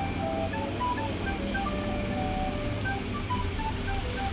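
Background music: a melody of short, beeping notes at changing pitches over a steady low bass.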